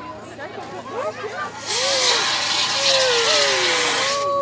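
CO2 fire extinguisher discharging through its horn nozzle: a loud, steady hiss that starts suddenly a little under two seconds in, with voices around it.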